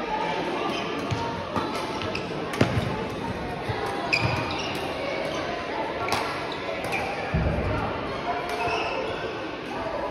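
Badminton rally: sharp racket strikes on a shuttlecock every second or so, mixed with footfalls of players on the court, one heavier thud about seven seconds in. The sounds echo in a large sports hall.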